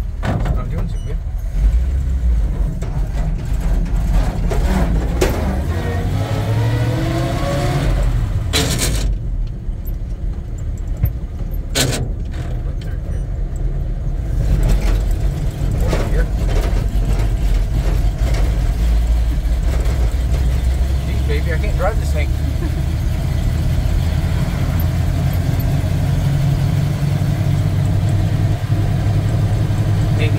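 1948 Ford truck's engine running under load on the road, heard from inside the cab, rising in pitch as it accelerates about five to eight seconds in. Two sharp knocks come near nine and twelve seconds.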